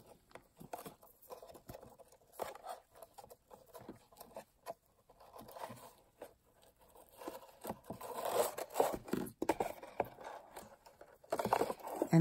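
Ribbon being tied into a bow around a cardstock box: faint, irregular rustling and scraping of ribbon against paper, a little louder for a couple of seconds about two thirds through.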